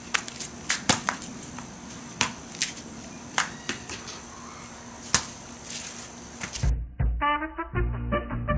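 A basketball bouncing and being caught and passed on a paved court: a series of sharp, irregular thuds. Near the end it cuts to brass-led swing music.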